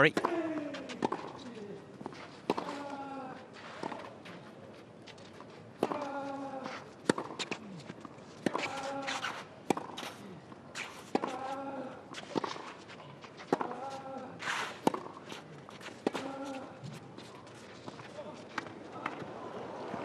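A clay-court tennis rally: racket strikes on the ball about once a second, most shots met by a player's short grunt falling in pitch, with footsteps on the clay between shots.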